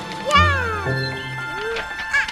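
A young child's short high-pitched cry that falls in pitch, given with the effort of throwing a paper airplane, over background music with steady low notes.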